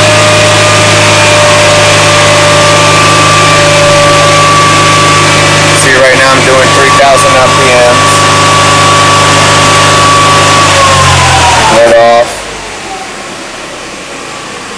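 Car engine held steadily at about 3,000 rpm in Park, with a steady whine over the engine note. About eleven seconds in, the revs fall away and it drops back to a much quieter idle.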